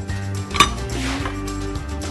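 A metal plate clanks once against metal about half a second in, with a brief ring after it, over steady background music.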